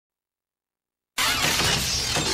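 Silence, then about a second in a sudden loud shattering crash from a TV network ident's soundtrack, with ringing tones running through it.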